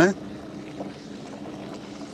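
Faint, steady wind noise on the microphone, with a low hum underneath.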